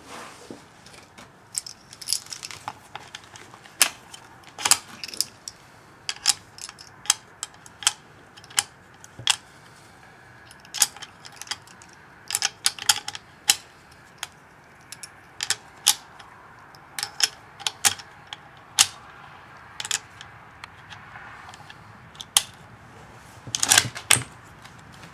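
Brass 7.5×54mm French rifle cartridges being handled, giving many light metallic clicks and clinks at irregular intervals, with a louder cluster of clicks near the end.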